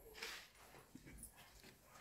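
Near silence: room tone, with a faint brief sound just after the start and a few faint ticks about a second in.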